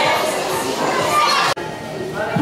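Crowd of children chattering and calling out together, a busy babble of many overlapping voices in a large hall. It cuts off abruptly about one and a half seconds in, leaving a quieter room hum.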